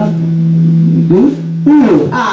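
Electric guitars and bass hold a sustained low note that cuts off about one and a half seconds in, as the song ends. Several short, loud swoops that rise and fall in pitch overlap the end of the note.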